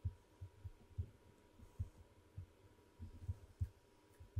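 Faint, irregular low thumps, two or three a second, over a faint steady electrical hum.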